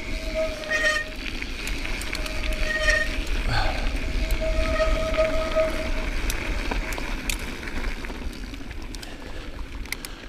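Mountain bike rolling along a gravel road, with steady tyre and wind noise. A steady, even whine sounds three times, briefly near the start, again about two seconds later, and longer around the fifth second.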